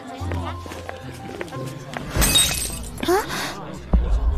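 A porcelain teacup smashing on paving about two seconds in: a sudden crash with a brief high ringing of shards, over a low steady hum of background score.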